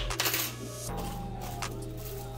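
Thin plastic packaging rustling and crinkling as a bread machine's measuring cup and small parts are unwrapped, with a few light clicks, over background music.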